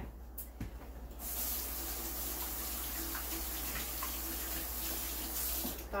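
Kitchen faucet running into a stainless-steel sink while a mushroom is rinsed under it to wash off the dirt. The water comes on about a second in, runs steadily and shuts off just before the end.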